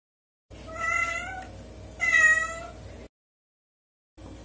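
A domestic cat meowing twice, the two meows about a second and a half apart, cut off abruptly.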